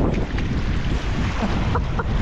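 Wind buffeting the microphone over shallow river water running across stones as someone wades through it barefoot; a steady, rumbling noise with no distinct events.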